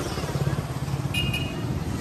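Street traffic noise with a steady low rumble from vehicles, and a brief high-pitched horn toot about a second in.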